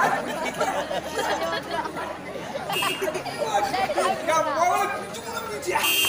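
Men's voices talking, loud and overlapping, as stage dialogue.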